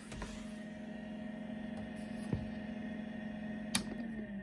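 Apple Macintosh SE running with a steady hum. A single sharp click near the end is its rear rocker power switch being flipped off after the 'safe to switch off' shutdown screen.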